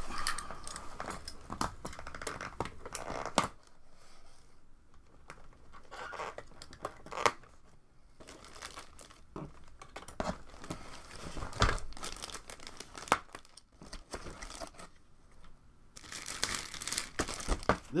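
Packaging being handled while a toy blaster is unboxed: plastic crinkling and tearing, with scattered clicks and knocks. Busiest in the first few seconds and again near the end, quieter in between.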